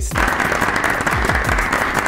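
Close crunching of a shredded wheat cracker topped with dip and crispy bacon bits, bitten and chewed. It is a dense, continuous crackle that starts abruptly as the bite is taken, over background music with a beat.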